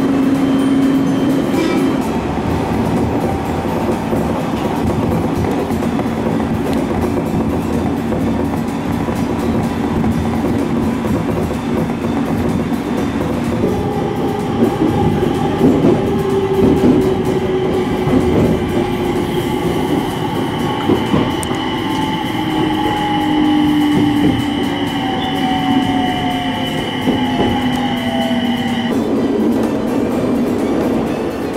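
Electric local train running at speed, heard from inside the car: steady rail and running noise with some wheel clicks. From about halfway through, the motor whine slowly falls in pitch and stops shortly before the end.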